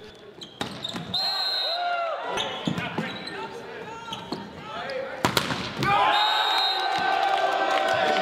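Volleyball rally in a gym: sneakers squeaking on the hardwood court and a sharp ball strike about five seconds in, followed by sustained shouting and cheering from players and crowd.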